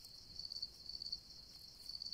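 Crickets chirping: a faint, steady, high-pitched pulsing trill.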